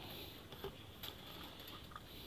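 Last few drips of water falling from an emptied plastic bucket into a water-filled lotus tub: faint patters, the clearest about half a second and a second in.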